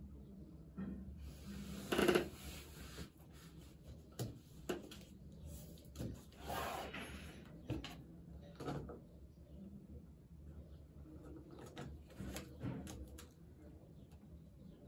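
Desk handling sounds as a book and notebook are shifted and opened and a pen is picked up: rustling paper, with light knocks and taps on the wooden tabletop. The loudest is a rustle about two seconds in, with another longer rustle around two thirds of the way, over a low steady room hum.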